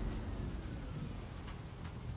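Film soundtrack of a landing craft at sea: a steady low rumble of engine and waves, with seawater spray splashing and hissing over the boat and the soldiers' helmets.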